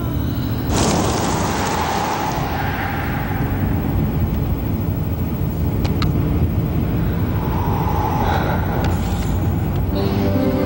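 A car driving, heard as a deep steady rumble of engine and road noise, with a sudden rushing whoosh about a second in that fades over the next couple of seconds.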